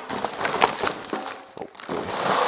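A plastic-wrapped, taped cardboard box being pulled open by hand: plastic wrap crinkling and cardboard flaps rustling in an irregular run of crackles and ticks.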